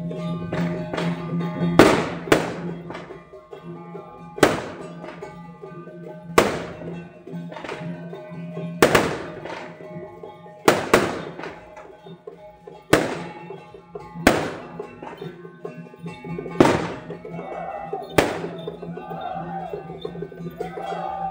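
Temple-procession percussion: loud, ringing gong and cymbal strikes every second or two over a steady droning tone, with a wavering melody coming in near the end.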